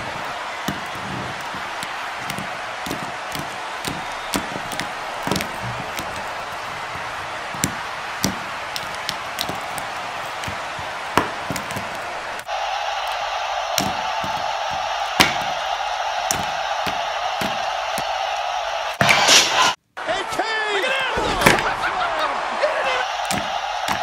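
Plastic wrestling action figures knocked and slammed against a tabletop: a long run of irregular knocks over a steady hiss. About halfway a steady hum joins in, and near the end a voice is heard.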